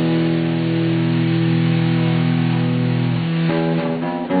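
Acoustic guitars playing, a chord left ringing for about three seconds before new notes come in near the end.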